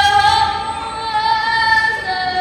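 A female voice sings one long held note in Tibetan opera (lhamo) style. The note wavers in a vibrato during the first half second, then holds steady.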